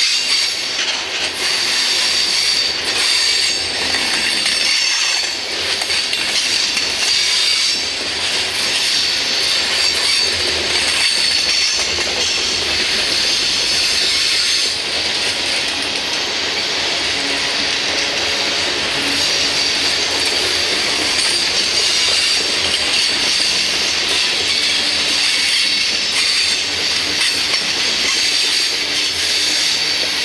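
Covered hopper cars of a freight train rolling past close by: continuous wheel-on-rail rumble with a steady high-pitched squeal from the wheels.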